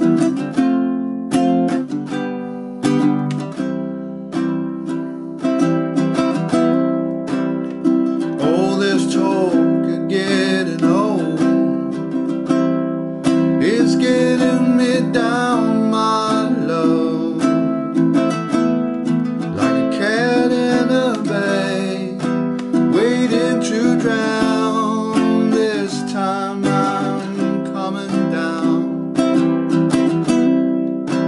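Baritone ukulele strummed in steady chords, with a man's singing voice joining about eight seconds in and carrying on over the strumming.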